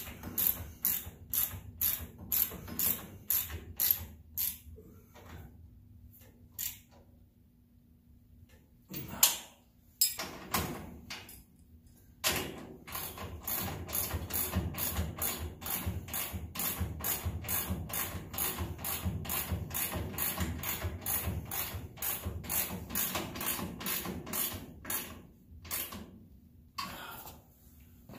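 Hand ratchet wrench clicking in steady strokes, about three clicks a second, as a front suspension bolt is tightened. There is a sharp knock about nine seconds in during a pause, then the ratcheting resumes in a long run and stops near the end.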